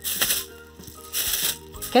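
Thin plastic produce bags crinkling as vegetables are picked by hand into them, in two short bursts, at the start and about a second in, over soft background music.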